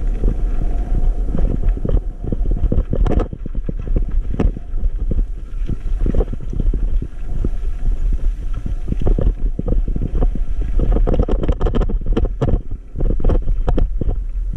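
Riding noise of an e-bike on a rough dirt track: a steady low rumble of wind buffeting the microphone, with the frequent knocks and rattles of the bike jolting over stones and bumps.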